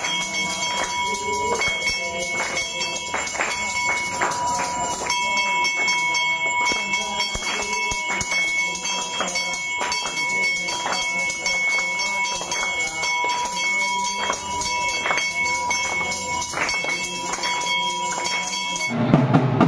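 A group singing an aarti and clapping in time, over a bell rung steadily throughout.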